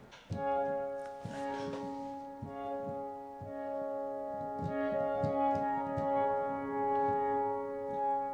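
Pure Upright iOS sampled-piano app, played from a MIDI keyboard on a morphed, pad-like blend of its presets: slow chords whose notes are held and sustained rather than dying away like a piano's.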